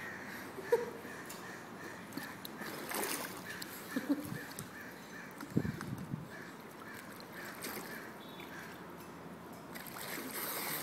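Faint swimming-pool ambience: quiet water lapping and sloshing around a toddler paddling in arm floats, with a few brief soft sounds.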